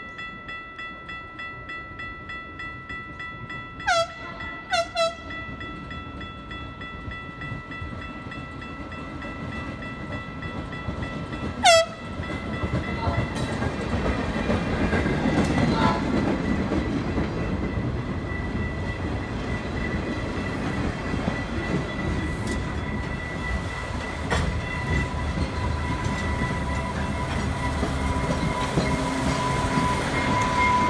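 A work train passing close by: short horn blasts around four and five seconds in and a louder blast near twelve seconds, then the steady rumble and clatter of wheels as loaded flatcars roll past. A steady high ringing tone runs under the first part.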